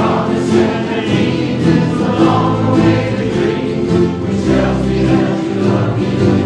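A large group of ukulele players strumming a song together while the players sing along as a choir.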